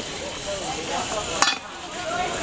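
Gas hissing from a small gas burner as it is turned on, with a single sharp clink about one and a half seconds in as a frying pan is set down on the burner.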